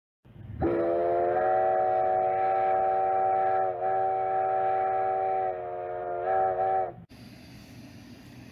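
A train's multi-note chime whistle sounds a chord in one long blast of about six seconds. It slides up in pitch as it opens, dips briefly twice, and ends with two short pulses before cutting off suddenly.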